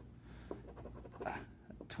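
A coin scraping the scratch-off coating off a lottery ticket, in faint, uneven strokes.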